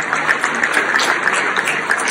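Audience applauding, a steady crackle of many hands clapping.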